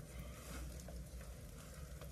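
Faint light rain pattering, over a low steady rumble.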